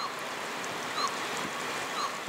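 A steady rushing hiss of outdoor ambience, with a faint short chirp about once a second.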